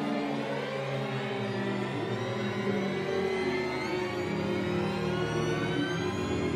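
String ensemble playing a dense mass of sustained bowed notes, with many pitches sliding upward in overlapping glissandi.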